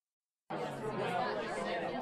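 Crowd chatter, many voices talking at once, starting about half a second in and holding steady at a lower level than the dialogue.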